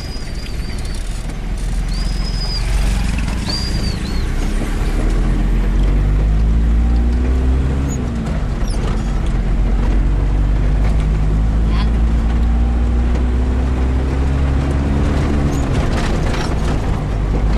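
Vehicle engine heard from inside the cabin, a steady low rumble. Its pitch climbs as the vehicle picks up speed, drops around halfway through as it changes gear, then climbs slowly again. A few short high whistling calls sound in the first few seconds.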